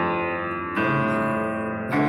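Instrumental music: rich chords ringing out and decaying, with a new chord struck about once a second.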